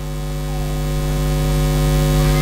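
Steady electrical mains hum and hiss from a microphone and sound system, a buzz of evenly spaced steady tones that grows a little louder.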